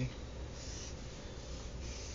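Drawing strokes on paper: short scratches, one about half a second in and another near the end, over a low steady hum.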